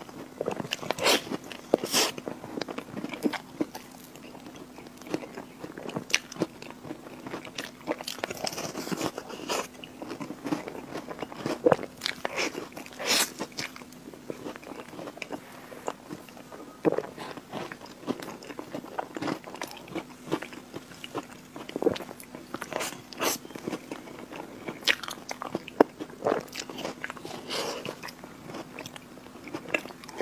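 Close-miked eating sounds: a person biting and chewing mouthfuls of Oreo-topped cream cake, with scattered soft crunches of the chocolate cookie and wet mouth clicks. A low steady hum runs underneath.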